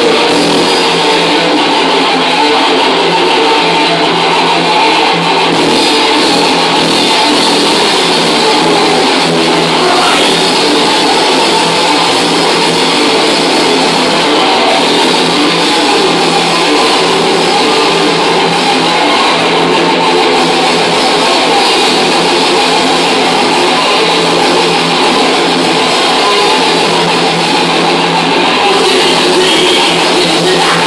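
A thrash metal band playing live: electric guitars, bass and drums in a loud, unbroken passage.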